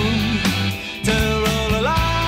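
Recorded rock song by a guitar band, an instrumental stretch of drums under long held notes. The band drops back briefly about halfway, then a held note bends up in pitch near the end.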